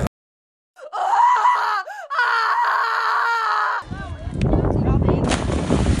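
Edited-in sound effect: a sudden dead silence, then a thin, voice-like wail with wavering pitch for about three seconds, followed by a rushing noise for the last two seconds.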